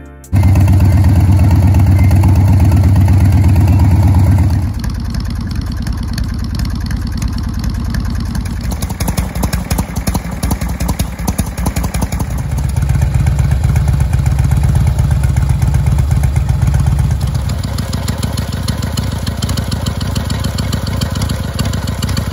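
2006 Harley-Davidson Electra Glide's Twin Cam 95 V-twin with Vance & Hines exhaust running. It is loud for about the first four seconds, settles lower, then picks up again for several seconds around the middle before easing back.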